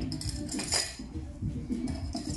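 Light clinking of small metal and glass items, several quick clinks close together about half a second in, as barber's tools and bottles are handled on a counter.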